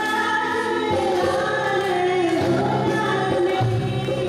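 A woman singing a song into a microphone, holding long notes, backed by a live band with electric guitars; low bass notes come in near the end.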